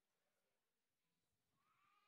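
Near silence: hall room tone, with a faint high-pitched rising call near the end.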